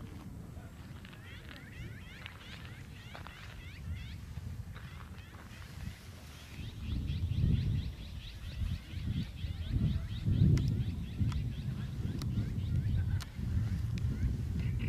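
Wind rumbling and gusting on the microphone, stronger in the second half, over small birds chirping in quick repeated trills. A few sharp ticks come near the end.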